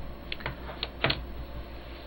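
A few soft, short clicks, about five of them in quick succession around the first second, over a steady low hum.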